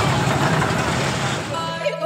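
Loud, steady rushing noise with a voice in it, cut off just before the end as background music begins.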